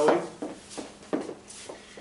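Footsteps of dress shoes and heeled sandals on a wooden floor as a couple turns and repositions: a handful of separate taps and scuffs.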